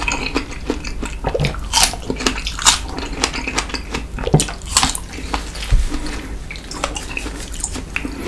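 Close-miked, wet chewing of a fresh strawberry, with irregular juicy smacks and clicks of the mouth.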